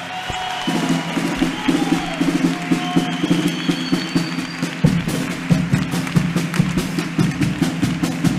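Carnival chirigota playing an instrumental passage: guitar over a steady, even drum beat, with a few held higher notes. The low end grows fuller about five seconds in.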